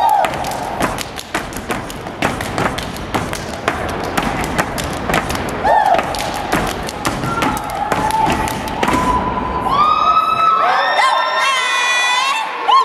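Step team stomping and clapping in a fast rhythm on a stage floor, with voices calling out over it. About ten seconds in the stomping stops and high-pitched shouts and whoops take over.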